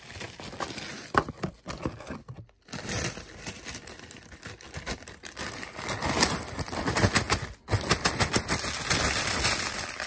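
Plastic zip-lock bag crinkling and rustling as broken fused-glass fragments are tipped from it into a plastic tub, with many small clicks of glass pieces. A few light taps come first, and the rustling and clicking start about three seconds in and get louder in the second half.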